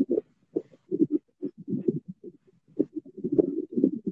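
A voice breaking up over a poor video-call connection, heard as muffled, choppy fragments with no clear words.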